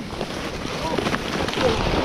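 A sled sliding fast over packed snow: a steady scraping hiss, mixed with wind rushing over the microphone.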